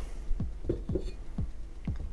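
Handling noise: a few soft, low thumps as car speakers are set down on and picked up from a wooden workbench.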